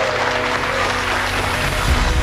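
Guests applauding over background music, with the music's low bass beat coming in strongly near the end.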